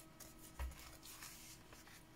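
Faint rustling of paper cards and envelopes being handled and shifted, with one soft thump a little after halfway.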